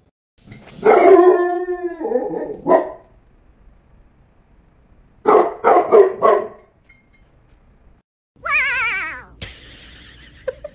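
A small white fluffy dog barking, a quick run of about five barks. Before it comes a drawn-out cry of about two seconds, and near the end a short wavering high-pitched cry.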